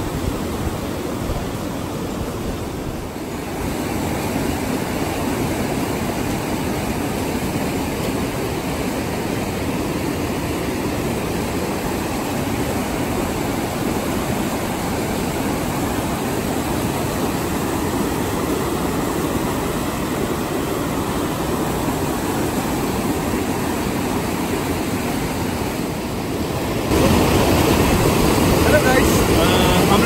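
Fast mountain stream running over rocks: a steady rush of white water that gets louder about 27 seconds in, with a few voices faintly over it near the end.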